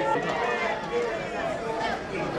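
Several people's voices talking and calling out at once, overlapping.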